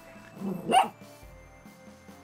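A French bulldog barks once, briefly, about half a second in.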